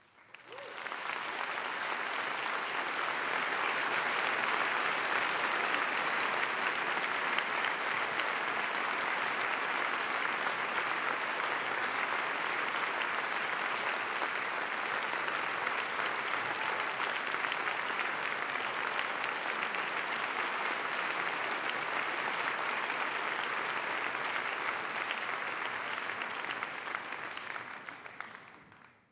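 Theatre audience applauding, swelling up right after the music stops, holding steady and then fading out near the end.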